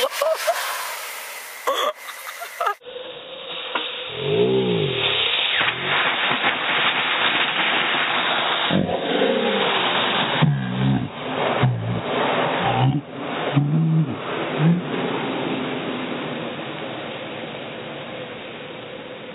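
A homemade sparkler bomb burning with a steady hiss, with laughter over it. About three seconds in, the sound cuts to a duller, muffled track: a steady hiss with deep, drawn-out, voice-like sounds that bend up and down.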